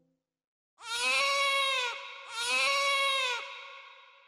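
A newborn baby crying: two long wails, each about a second, rising then falling in pitch.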